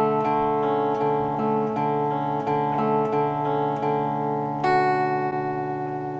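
Guitar chords strummed slowly and evenly, about three strokes a second, with the chord ringing between strokes. A new chord is struck near the end.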